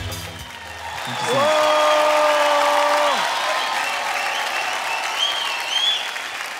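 Studio audience applauding as the song's music stops. A long held note sounds over the clapping for about two seconds, starting about a second in.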